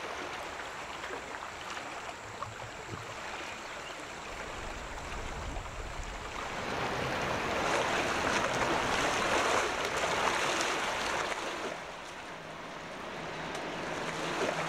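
Sea surf washing over a rocky shore, a steady rush of water that swells louder about halfway through and eases off near the end.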